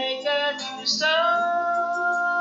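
Pop ballad with backing music: a woman sings, holding one long note from about a second in.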